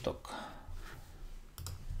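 A computer mouse click, a quick double tick about one and a half seconds in, as a word tile is selected in the on-screen exercise. Before it, the last word of a spoken sentence trails off.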